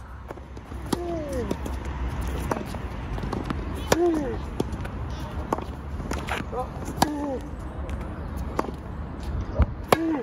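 Tennis rally: a racket strikes a tennis ball about every second and a half. Every other strike carries a short exhaled grunt from the player, who breathes out on each forehand.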